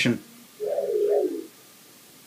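A short wavering tone from the computer, a little under a second long, starting about half a second in, with its pitch stepping up and down.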